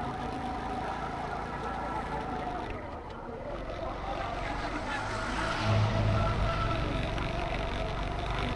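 A motorcycle riding along a road: the engine runs at a steady pitch under low wind and road rumble. A brief, louder low rumble comes a little past the middle.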